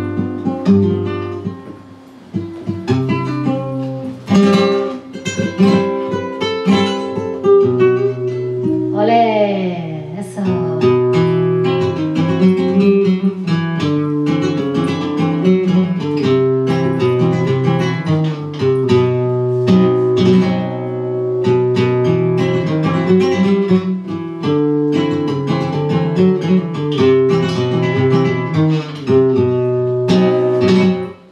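Flamenco guitar playing an instrumental introduction to a song, a steady flow of plucked notes, runs and strummed chords.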